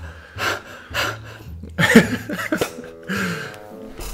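A woman's pained gasps and sharp breaths through the mouth, from the burn of an extremely hot chili chip, with a short pitched whimper about three seconds in.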